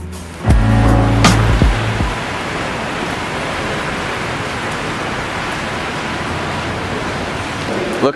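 Background music with a beat that cuts off about two seconds in, followed by a steady hiss of rain and car traffic on wet pavement.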